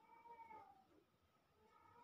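A cat meowing faintly: one call that rises and then falls in pitch, followed by a fainter call near the end.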